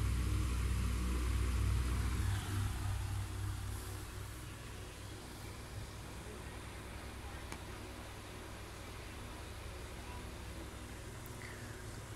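Steady low mechanical hum with a faint hiss. It is louder for the first two seconds or so, then settles lower.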